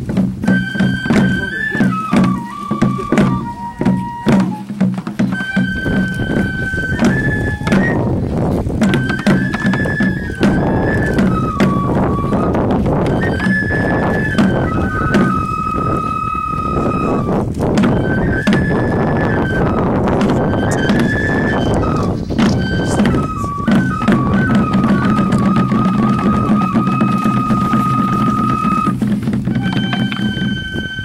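Live festival music for a lion dance: a high bamboo flute melody of held notes and stepwise turns, over drums struck by the dancers in quick, irregular strokes, thickest in the first few seconds and again a little after twenty seconds.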